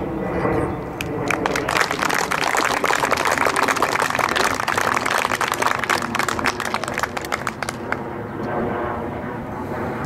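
Audience applauding: dense clapping that builds about a second in and tapers off near the end, over a steady engine drone.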